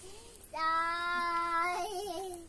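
A young child's voice holding one long note at a steady pitch for over a second, starting about half a second in and wavering as it trails off.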